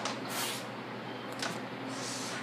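A man blowing out air hard through his mouth twice, about half a second in and again near the end, his mouth burning from a shot of Tabasco sauce.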